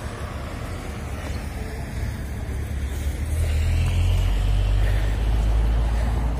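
A car passing on the street, its low rumble growing louder in the second half.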